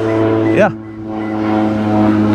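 Crop-duster airplane flying low overhead, its propeller engine a steady drone that grows louder.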